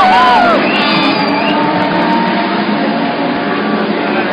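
The massed engines of a pack of race cars passing through a corner at the start of a 24-hour race, a dense, steady drone. A few short whoops from the grandstand crowd come in the first half-second.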